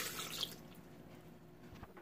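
Lemonade poured from a plastic measuring cup into a plastic blender jar over ice, the pour trickling out within about half a second, then faint room tone with a small click near the end.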